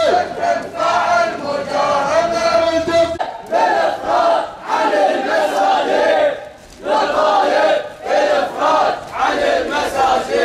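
Crowd of marchers chanting Arabic protest slogans together. A long held note runs for about the first three seconds, then short rhythmic chanted phrases repeat about once a second.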